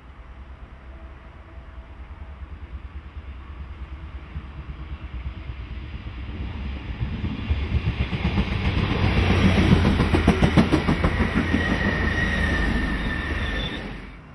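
Two coupled DB Class 648 diesel multiple units approaching and passing close by, growing steadily louder to a peak with a rapid clickety-clack of wheels over rail joints. A brief high wheel squeal comes near the end, and the sound cuts off suddenly.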